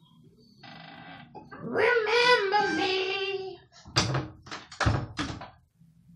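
A wooden door being pulled shut, with sharp knocks and a heavy thud about four to five seconds in as it closes. Before it comes a long, wavering pitched sound lasting about two seconds.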